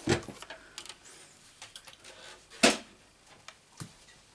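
Card stock and a paper trimmer being handled on a craft mat: light scattered paper clicks and taps, with one sharp knock about two and a half seconds in and a smaller knock near the end.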